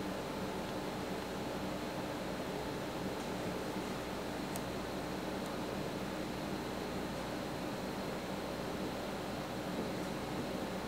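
Steady low hiss with a faint hum: indoor room tone with no distinct event.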